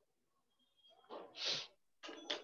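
A short, breathy vocal sound from a person about a second in, ending in a hiss.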